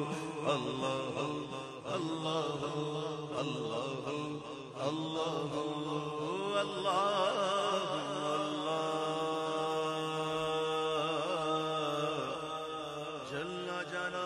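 Male voices singing a Punjabi naat without instruments. A lead singer draws out long, wavering, ornamented lines while a second voice holds steadier notes beneath.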